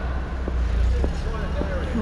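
Large-hall ambience: a steady low rumble with short clicks at a walking pace, and faint voices in the background during the second half.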